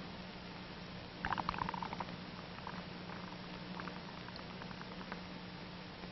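Soapy water in a bubble pipe bubbling as air is blown through it: a quick burst of crackling pops a little over a second in, then scattered small pops as foam builds in the bowl, over steady hiss and hum.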